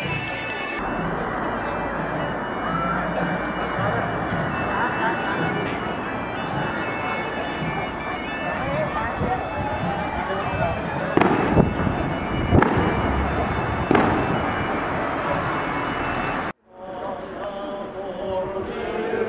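Crowd of people talking in a street, broken in the second half by three sharp bangs about a second and a half apart, typical of festival rockets. Near the end the sound cuts off abruptly.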